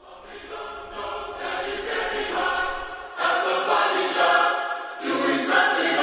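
Pop song intro: layered, choir-like vocals singing the slow opening hook with no beat, fading up from silence in the first second.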